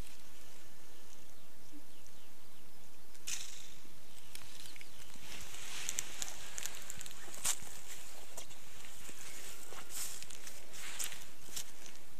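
Steady outdoor hiss with a few faint rustles and clicks scattered through it, from someone moving about on dry grass and fallen leaves.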